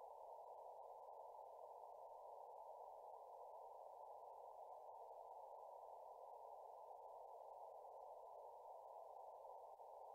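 Faint steady receiver hiss from an Elecraft K3S transceiver's speaker: band noise with no signal, heard as a narrow, mid-pitched hiss.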